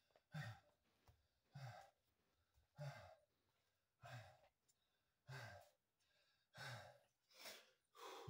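A man breathing hard and faint after many burpees: seven heavy exhales with a low voiced edge, roughly one every second and a quarter.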